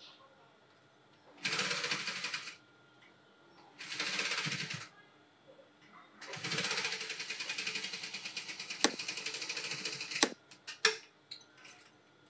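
Industrial sewing machine stitching fabric in three runs: two short bursts of about a second each, then a longer run of about four seconds. A few sharp clicks come near the end.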